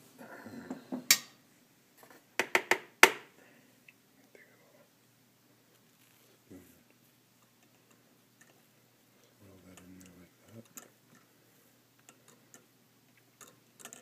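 A metal spoon clinks sharply against a stainless steel mesh tea strainer and ceramic mug, five quick strikes in the first few seconds. Near the end come softer ticks as the coffee grounds in the strainer are stirred.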